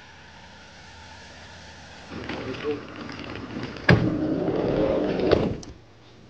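A car on a wet driveway: a faint steady rush at first, then louder, busier sound from about two seconds in, with voices. A single sharp knock about four seconds in, the loudest sound here, fits a car door shutting.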